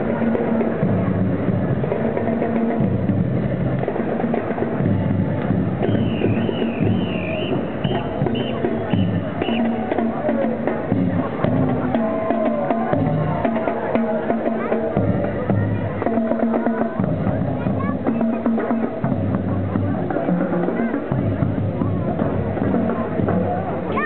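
Marching band playing as it marches: saxophones and brass over drums, with the sousaphone holding low notes that shift every second or two.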